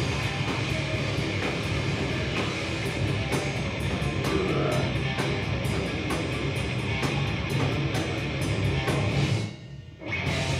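Heavy metal band playing live: distorted electric guitars, bass guitar and drum kit in an instrumental passage with no vocals. Near the end the band stops short for about half a second, then comes back in.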